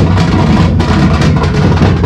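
Loud, continuous drumming on barrel drums, with close-packed beats and no break.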